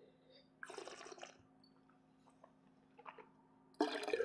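A sip of wine taken from a glass with a short noisy draw about half a second in, then a louder splashy burst near the end as the wine is spat into a stainless steel cup.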